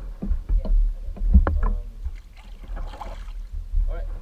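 Water lapping and paddle splashes against an outrigger canoe's hull over a low rumble, with several short knocks and a wash of splashing about three seconds in.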